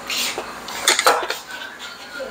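Chopsticks and a spoon clinking against a small glazed ceramic bowl as it is set down on the table: a few sharp clinks, the loudest about a second in.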